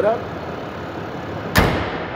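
Hood of a Ram 2500 pickup slammed shut about a second and a half in, one loud thud. Under it runs the steady idle of the truck's 6.7-liter Cummins diesel.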